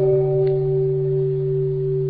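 Steady sustained tones of the accompanying music, a low drone with a higher held note above it, with no voice.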